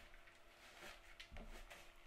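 Faint scraping and ticking of a spoon stirring crumbly pecan-and-butter pie crust mixture in a mixing bowl, with a soft low thump partway through.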